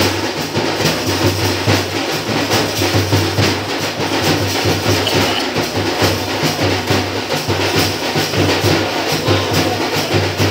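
Loud drum-led music with a fast, steady beat that runs on without a break.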